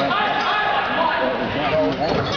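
Players and spectators shouting during a volleyball rally, with the slaps of the ball being hit and played, echoing in a large gym.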